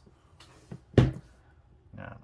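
A single sharp thump about a second in, as the pocket knife and hands come down onto the work table. It is loud because the camera stands on the same table and picks the bump up through it.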